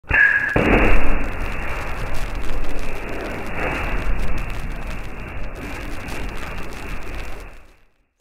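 An explosion setting off a large fireball: a sudden blast about half a second in, then a long rushing burn that swells again a few seconds later and fades out near the end. A short high tone sounds just before the blast.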